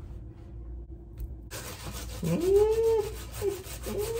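A knife sawing through a loaf of homemade rice bread, a rubbing rasp that starts about one and a half seconds in. A few short tones that rise and fall sound over it.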